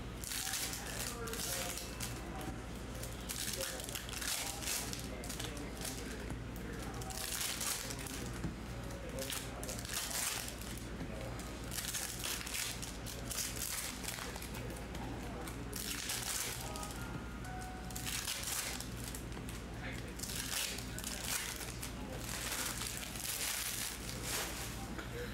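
Foil trading-card pack wrappers crinkling again and again as packs of Topps Chrome cards are opened and handled, over a steady low hum.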